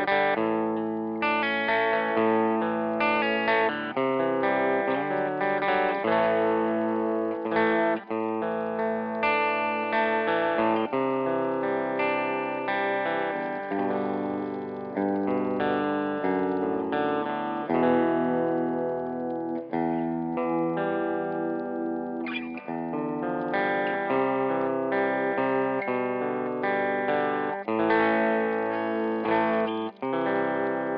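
Fernandes Vertigo electric guitar played through GarageBand, heard straight from the recording line rather than through a room: chords strummed and notes picked, ringing out, with brief breaks between phrases.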